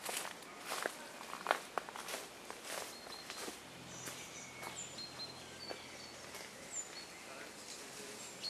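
Quiet forest ambience: scattered sharp clicks and crackles, like twigs and leaf litter underfoot, mixed with short high bird chirps. A faint steady low drone comes in about halfway through.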